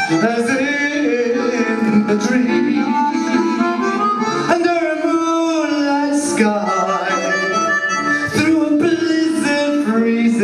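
A man singing a song live into a microphone over a steady instrumental backing, his voice held and wavering on long notes.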